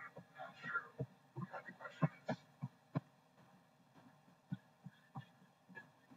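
Faint, uneven clicks and knocks of computer input, about ten spread unevenly across the stretch, the sound of someone clicking and typing at a desk through a call microphone.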